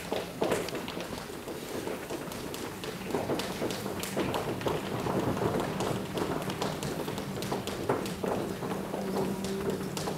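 An audience improvising a wordless sound piece: many hands and feet tapping, clicking and thumping in a dense, irregular patter. About three seconds in, a low steady hum joins and holds under the tapping.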